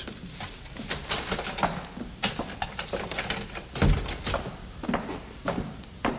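Radio-drama sound effects of footsteps walking away, a string of irregular short steps, with a heavier low thump of a door shutting about four seconds in.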